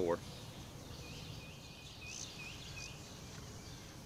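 Quiet outdoor ambience. A run of short, high chirps, about four a second, starts about a second in and stops near the end, over a faint steady high tone.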